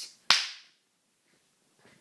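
A single sharp smack of a hand, one crack about a third of a second in with a brief fading tail.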